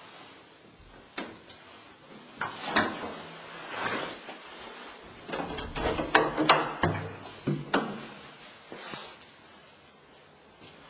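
A string of irregular knocks, clicks and scrapes, the loudest cluster a little past the middle.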